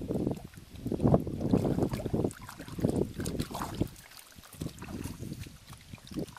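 Hands splashing and sloshing in shallow muddy water among grass while groping for fish by hand, in irregular bursts that are loudest in the first half.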